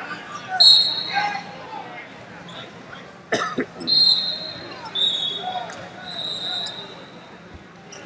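Referee whistles in a gym hall: four steady, shrill blasts of half a second to a second each, at slightly different pitches, with a single sharp thump a little after three seconds and voices in the background.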